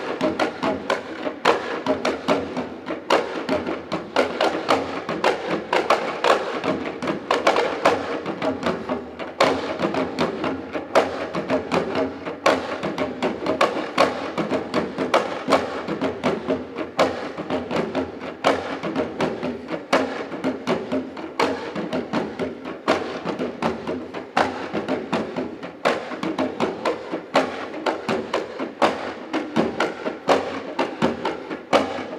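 Nigerian Nupe folk drumming: several drums played together in a fast, steady rhythm of sharp strokes.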